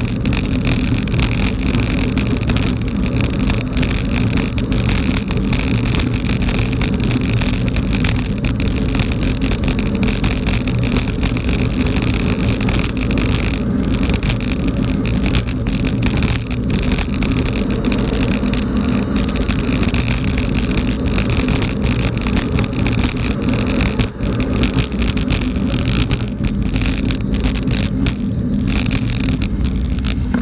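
Mountain bike rolling over a loose gravel dirt road, picked up by a camera mounted on the bike: a steady loud rumble with frequent small rattles and knocks from the tyres on stones and the shaking frame.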